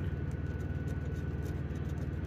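A coin scratching the coating off a paper scratch-off lottery ticket, with a steady low hum underneath.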